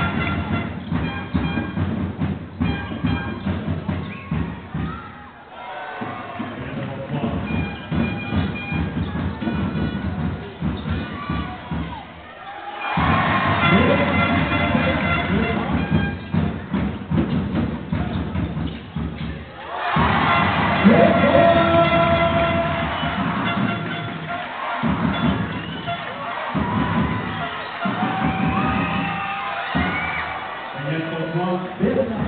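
Background music over basketball arena crowd noise, with the crowd cheering louder about 13 seconds in and again about 20 seconds in.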